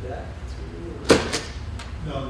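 Two sharp knocks about a quarter second apart, a little past a second in, over quiet murmured speech and a steady low room hum.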